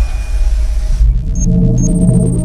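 Cinematic logo-intro music: a deep, heavy rumble, with held synthesizer tones coming in about halfway and two short high blips.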